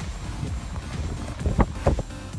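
Strong storm wind buffeting a phone microphone: a low, uneven rumble, with two louder gusts near the end.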